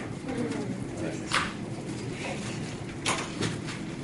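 Classroom room sound: a steady low hum under faint background chatter, broken by two short sharp sounds, one just over a second in and one about three seconds in.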